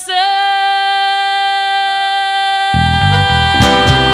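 A woman's voice holds one long sung note, the final note of a gaúcho song. About two and a half seconds in, the band comes in underneath with bass, guitar and accordion chords.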